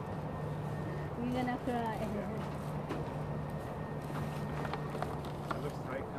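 Faint voices talking in the background over a steady low hum, with a few light clicks.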